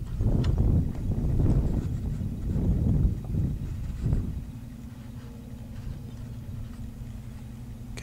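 Handling noise from hands on a video camera while its zoom is adjusted: irregular low rumbling and bumps for about four seconds, then only a steady low hum.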